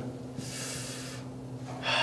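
A man breathing out audibly while pondering: one long airy exhale about half a second in, and another breathy sound near the end, over a faint steady low hum.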